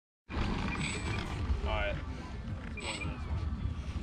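Wind buffeting the microphone in a rough low rumble, with brief snatches of voices in the background and a faint thin high whine that comes and goes.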